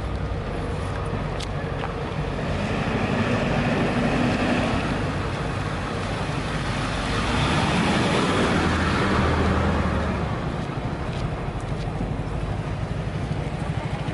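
Motor vehicle noise: a steady engine hum with road traffic, growing louder for a few seconds near the middle before easing off.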